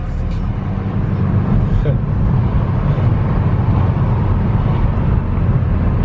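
Car driving along city streets, heard from inside the cabin: a steady low rumble of engine and road noise.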